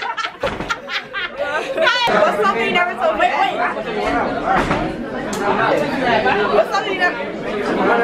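Overlapping chatter of several voices talking at once, with no single voice standing out.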